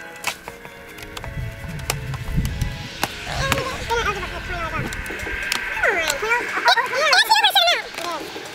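Background song: held instrumental notes at first, then a singing voice from about halfway that grows busier near the end. A few sharp clicks cut through the first part.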